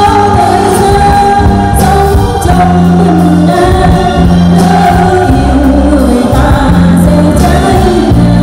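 A woman singing long held notes into a microphone, backed by a live band of drums, electric guitar, bass guitar and keyboard, amplified and loud.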